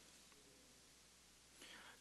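Near silence: faint room tone in a pause in the sermon.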